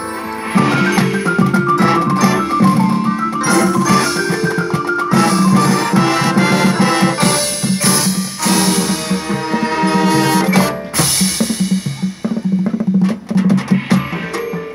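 Marching band playing loudly, with brass and a drumline of snare and bass drums. The full ensemble comes in hard about half a second in, over held chords, and turns choppy, with short punctuated hits, near the end.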